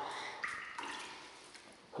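Faint splashing and trickling of shallow, cold spring water in a pebble-lined stone basin, with a brief splash about half a second in, then fading.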